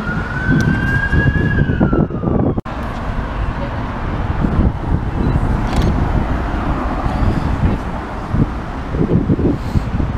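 An emergency vehicle's siren wails in one slow rise and fall of pitch over street traffic noise. It breaks off suddenly under three seconds in, leaving the noise of passing traffic.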